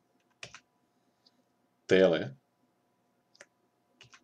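A few short, sharp computer-mouse clicks, one soon after the start, a faint one a second later and another near the end, as photo slides are advanced. A faint steady electrical hum sits underneath.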